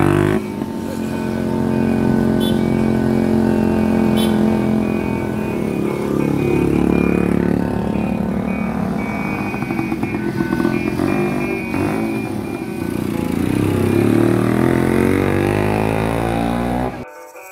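Small engines running and revving in road traffic: an old bemo three-wheeler's engine pulling away, mixed with the motor scooters riding alongside, the pitch rising and falling with the throttle.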